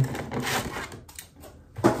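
Rigid clear plastic cake container being handled, its plastic crackling and clicking, mostly in the first second.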